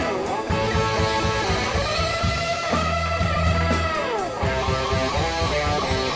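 Live rock band playing an instrumental passage: guitars, bass and drums, with one long lead note held from about two seconds in that slides down near four seconds.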